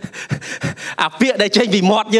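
A man laughing breathily into a handheld microphone in short puffs of breath, before his speech picks up again about a second in.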